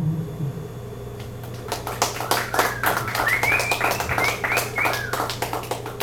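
The last acoustic guitar chord dies away. From nearly two seconds in, a small audience claps in a room, with a few short high calls rising over the clapping.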